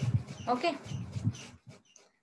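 Speech: a woman says "okay" over uneven low rumbling background noise.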